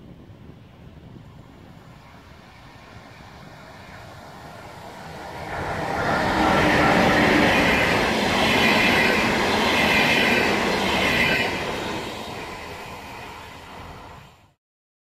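Pesa double-deck push-pull train (111Eb Gama electric locomotive with 316B/416B double-deck cars) passing close by. Its rumble of wheels on rail grows as it approaches, is loudest for about five seconds from around six seconds in with a high ringing over it, then fades as it moves away.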